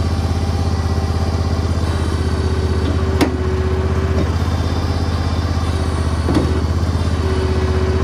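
John Deere 400 garden tractor's twin-cylinder air-cooled engine running steadily, heard from the operator's seat. A faint whine comes and goes, with a sharp click about three seconds in and another about six seconds in.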